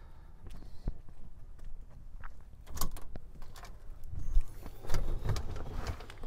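A front door being opened and stepped through, with scattered clicks, knocks and low footfalls that grow busier about four seconds in.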